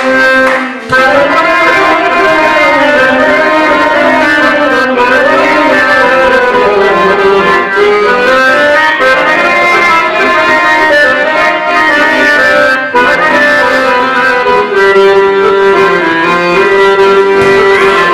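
Live Bosnian folk music: a wavering, ornamented melody over sustained chords, loud and continuous, with a brief dip about a second in.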